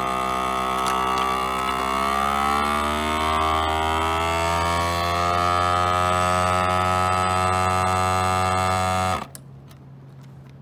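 FoodSaver vacuum sealer's pump running with a steady, buzzing hum, its pitch rising over a few seconds as it pulls the air out of the bag, then cutting off suddenly near the end.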